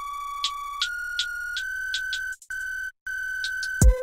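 Hard trap beat instrumental: a held electronic synth lead note steps up in pitch over light high ticks and cuts out briefly twice. A deep 808-style bass hit drops in just before the end.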